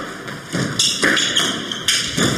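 Squash ball being struck by rackets and hitting the court walls during a rally: a few sharp knocks, about a second in and near the end.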